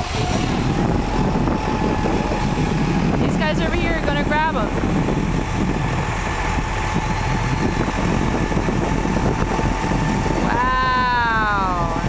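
A crane's diesel engine runs steadily under load with a faint steady whine. Short pitched calls come about four seconds in, and a longer call with a falling pitch comes near the end.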